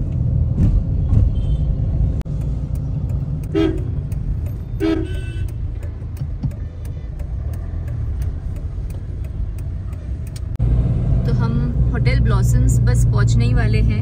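Steady road and engine rumble inside a moving car's cabin, with two short vehicle horn toots about three and a half and five seconds in. The rumble grows louder near the end, where a voice starts talking over it.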